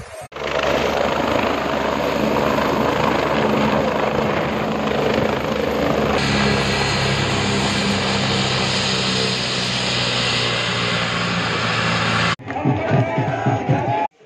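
AgustaWestland A109 Grand helicopter's twin turbines and rotor running on the ground, a loud, steady noise that starts abruptly just after the beginning and lasts about twelve seconds. Near the end it gives way to a crowd's voices.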